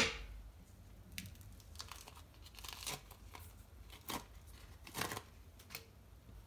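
Casing being peeled off a salami by hand: a string of short tearing and crinkling rips, the clearest about five seconds in.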